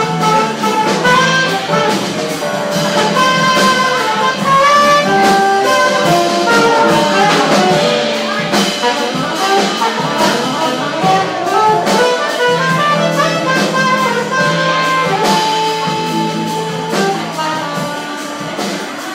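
Live jazz band playing instrumentally, with a horn playing a melodic line of single notes over a steady bass.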